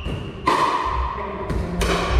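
Plastic pickleball being hit with paddles in a rally, each hit a sharp hollow pock that rings briefly. There is one about half a second in and two more close together near the end.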